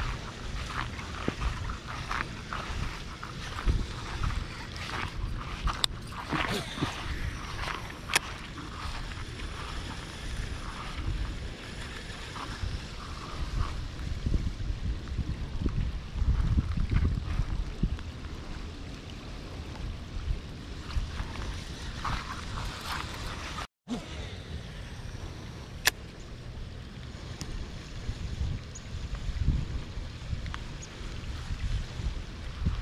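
Rain falling on pond water, with wind buffeting the microphone in uneven low rumbles. A few sharp clicks stand out over it.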